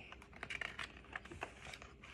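A hardcover picture book being opened and its pages turned and handled: a quiet run of small, irregular clicks and paper rustles.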